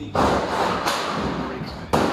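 Aluminium cladding on a large pipe elbow being knocked and handled. There is a thump just after the start that fades slowly, a sharp click a little before the middle, and a harder knock near the end.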